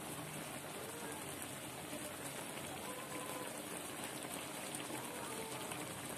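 Coconut milk boiling in a wok around pieces of tulingan fish, a steady bubbling and simmering.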